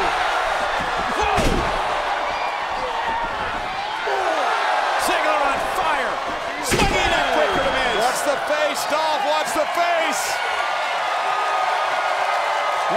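Wrestlers' impacts in a ring over a cheering, shouting arena crowd: several sharp slams and smacks of bodies and strikes, the heaviest about one and a half seconds and about seven seconds in.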